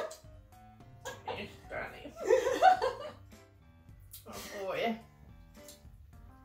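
Women laughing and making short vocal sounds over quiet background music.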